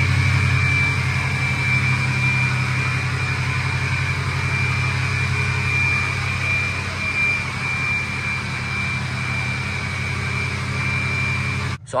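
Ford 6.0 L Power Stroke V8 turbo-diesel idling steadily, with a deep engine rumble under a steady high-pitched turbo whistle. The loud whistle comes from a 10-blade turbo swapped in from a 2003 F-250.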